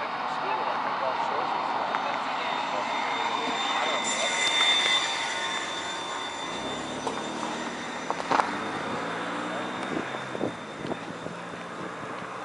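Outdoor street ambience of indistinct voices over a steady hum. A low engine drone comes in about halfway through, with a few sharp knocks after it.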